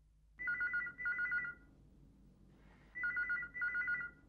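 Desk telephone ringing twice with an electronic two-note trill. Each ring is a double burst, and the two rings come about two and a half seconds apart.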